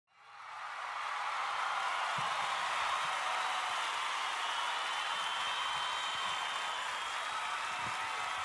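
Audience applauding, fading in over the first second and then holding steady.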